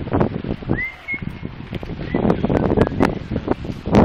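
Wind buffeting the phone's microphone, heard as loud, irregular rumbling and rustling. A brief thin whistle comes a little under a second in.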